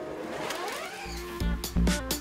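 Volkswagen I.D. R Pikes Peak electric race car's motor whine rising in pitch as it pulls away, heard over background music with a beat.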